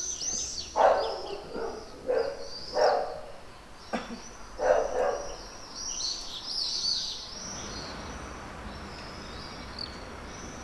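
Small birds chirping and twittering in quick high-pitched series, busiest in the first seconds and again around six to seven seconds in. Five or six short, louder sounds lower in pitch break in during the first five seconds, over a steady low hum of street ambience.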